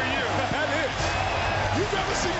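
Arena crowd cheering and screaming, many voices whooping over one another, with a steady low hum underneath.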